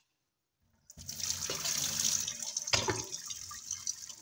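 Water running from a tap into a stainless steel kitchen sink, turned on about a second in as a steady rushing splash.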